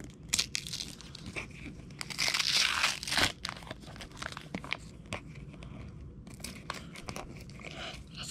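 Christmas wrapping paper being torn and crinkled off a book by a child's hands. Sharp crackles throughout, with one longer, louder rip about two seconds in and another run of tearing near the end.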